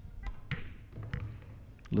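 A pool shot: the cue tip strikes the cue ball, followed by a few sharp clicks of billiard balls knocking together, one with a short ringing tail.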